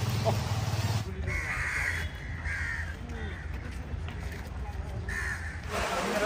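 A crow cawing several times, harsh calls of about half a second each, over steady outdoor background noise.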